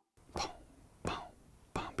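A man whispering three short, breathy sounds in an even rhythm about two-thirds of a second apart, marking out the beat of an organ lick.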